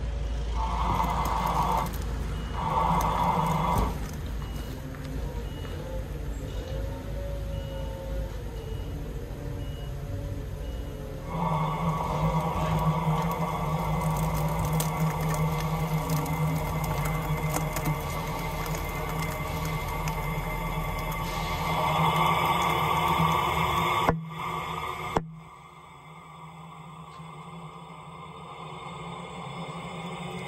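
Steady mechanical noise with a low hum, and a faint beep repeating evenly through the first ten seconds. The noise grows louder about eleven seconds in, then cuts off abruptly with a single click, leaving it much quieter.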